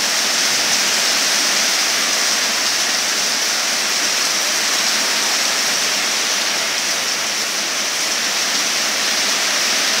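Heavy typhoon rain falling steadily onto standing floodwater and wet ground, an even hiss.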